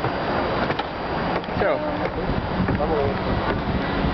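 Wind blowing across the microphone high on an open tower, a steady rough rushing, with faint voices of other people heard briefly about halfway through.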